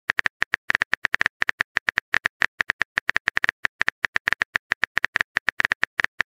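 Rapid, slightly irregular keyboard tapping clicks, about ten a second: a texting app's typing sound effect as a chat message is typed out.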